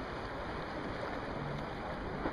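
Steady outdoor rush of sea water and wind, with no distinct events.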